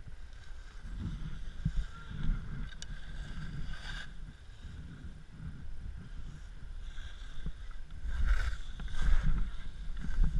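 Skis scraping and chattering over packed, bumpy snow while skiing downhill, with wind buffeting the action camera's microphone. Louder scrapes come about four seconds in and twice near the end.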